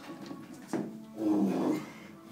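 A sharp knock, then a short, loud grunt-like vocal sound from a person, lasting about half a second.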